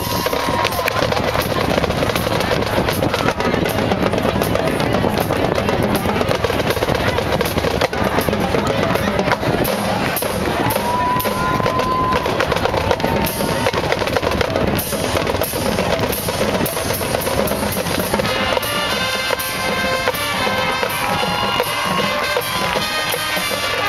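Marching band drumline playing, snare, tenor and bass drums with rolls and rapid strokes. Near the end the winds come back in with held chords.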